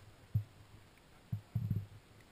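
A few dull low thumps: one about a third of a second in, then a quick run of them in the second half. No engine is heard running.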